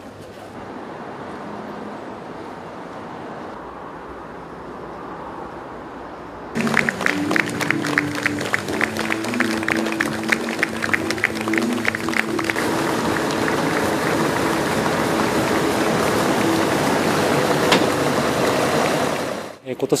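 A low steady hum, then about six seconds in, upbeat music starts with a crowd clapping along in rhythm and applauding. The music and applause carry on at an even level until just before the end.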